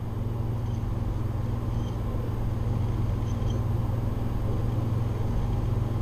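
Steady low electrical hum with faint hiss: the recording's background noise, with no other distinct sound.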